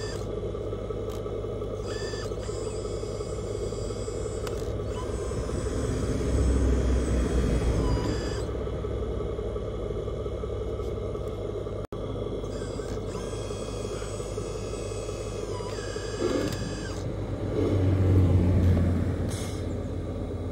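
1/14-scale hydraulic RC dump truck running: a steady low hum, with a high whine that comes in twice for a few seconds each and two swells of low rumble, one near the middle and one near the end.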